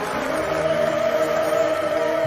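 Orchestra holding sustained notes, several pitches sounding together as a steady chord.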